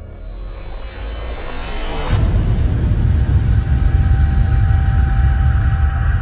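Cinematic logo-intro sound effect: a rising swell that builds for about two seconds, then a sudden deep, low rumble that holds loud, with a faint steady tone above it.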